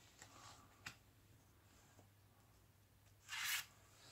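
Quiet handling of an oracle card from The Map deck: a few faint rubs and a light tap in the first second, then one short papery swish a little over three seconds in as the card is drawn off the deck and lifted.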